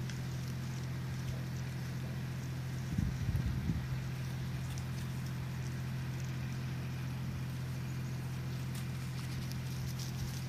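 Goat kids' small hooves stepping and scrabbling on bare dirt and dry grass as faint scattered clicks and rustles, over a steady low hum. A brief louder low sound comes about three seconds in.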